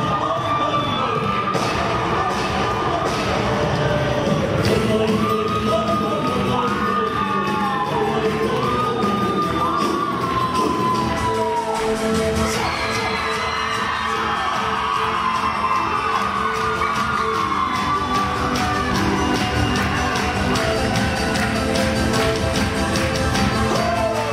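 Tinku dance music with singing and a fast, steady beat, with whoops and cheering over it.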